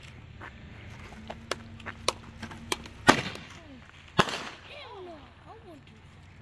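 A Roman candle firing, its shots heard as a string of sharp pops. The two loudest pops come about three and four seconds in.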